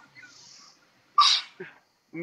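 A single short sneeze about a second in, sharp and brief with a hissing tail, followed by a faint trailing sound.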